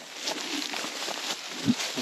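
Footsteps through undergrowth on a leafy woodland path: irregular short crackles and rustles of leaves and twigs underfoot.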